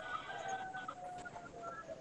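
A bird calling faintly in the background: a drawn-out call holding a steady pitch, broken into a few parts.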